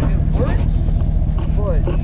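A pickup truck engine idling steadily, with voices talking over it.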